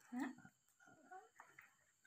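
Mostly a quiet room: a short questioning "hah?" in a voice at the start, then a few faint, soft voice sounds.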